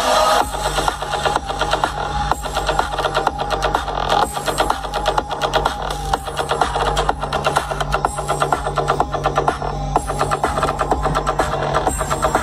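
Electronic dance music with a steady deep bass and a fast, even beat, played loud through a car audio competition system of trunk-mounted subwoofers and midrange speakers. The track switches abruptly about half a second in.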